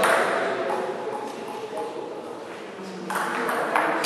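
Table tennis ball clicking off rubber-faced bats and the table in an echoing hall, with short ticks through the middle and the rally's sharper hits from about three seconds in.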